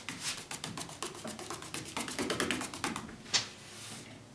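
Paintbrush bristles scrubbing rapid short strokes on a turned wooden chair leg, a quick scratchy patter, then one sharp knock near the end.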